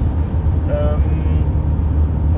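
Steady low drone of road and engine noise inside the cab of a Mercedes Sprinter 4x4 van moving at highway speed. A short vocal sound from the driver comes about two-thirds of a second in.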